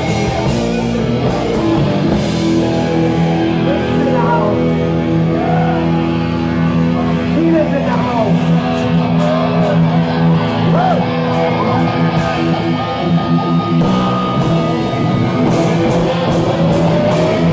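Heavy metal band playing live: distorted electric guitars holding sustained chords, with lead notes bending up and down in pitch partway through, over bass and drums, with cymbal crashes near the end.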